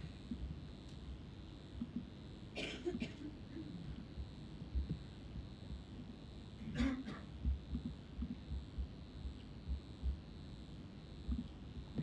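Quiet room tone of a hall, with scattered soft low bumps and two short sharp noises, about three and seven seconds in.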